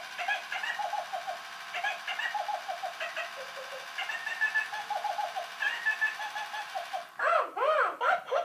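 1996 Tickle Me Elmo plush doll's built-in voice giggling, set off by a shake: several runs of quick, high-pitched, evenly spaced 'ha-ha-ha' laughter, with a louder swooping voice near the end.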